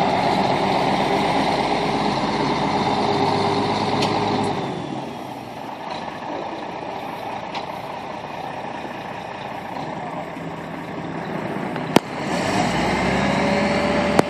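Diesel truck engine running under load while towing a boat on a hydraulic trailer. It is louder at first, eases off about five seconds in, and pulls harder again near the end, with a single sharp click about twelve seconds in.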